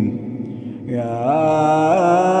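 A man's voice reciting the Quran in a melodic, drawn-out style. A held vowel fades out early on, and about a second in a new sustained note begins and climbs in pitch.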